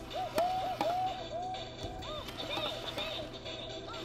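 Fisher-Price BeatBo toy robot playing its dance song through its small built-in speaker: a bouncy electronic tune of short, arching synth notes over a ticking beat.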